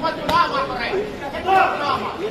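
Chatter and calling voices of several people in a large hall, with a few voices rising above the rest.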